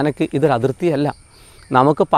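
A man speaking, pausing about a second in. Behind him runs a steady, unbroken high-pitched insect drone.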